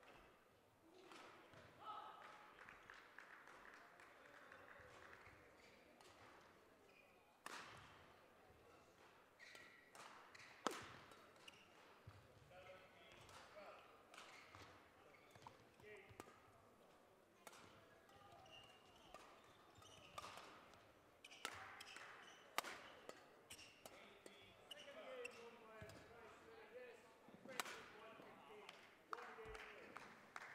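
Faint badminton play in a large hall: sharp racket strikes on the shuttlecock and footfalls on the court at irregular intervals, coming closer together in the second half as a rally is played. Faint voices murmur in the background.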